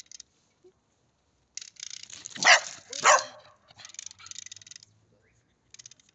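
A dog barks twice, about half a second apart, a little past halfway through, between stretches of rapid, scratchy rustling.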